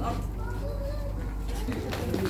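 Indistinct voices of people close by over a steady low hum; the hum drops away near the end.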